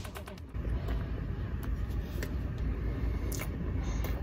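Chewing a mouthful of crunchy deep-fried Twinkie, with a few short mouth clicks over a steady low rumble.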